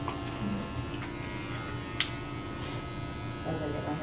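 Electric hair clippers running with a steady buzz. A single sharp click about halfway through.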